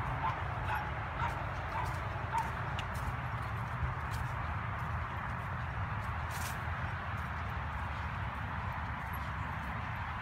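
Dry leaves rustling and crunching underfoot as someone walks steadily along the path. A dog gives about five short, high yips, roughly two a second, in the first few seconds.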